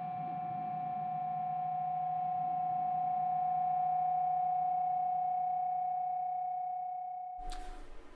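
A single held musical note, steady in pitch with rich overtones, swelling slightly and then fading before it cuts off abruptly near the end.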